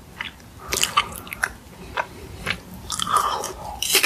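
A meringue cookie being bitten and chewed: a run of separate dry, sharp crunches.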